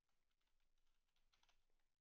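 Very faint computer keyboard typing, a few scattered key clicks barely above silence.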